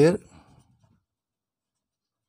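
The tail of a spoken word, then a faint scratch of a pen on paper that dies out within the first second; near silence after.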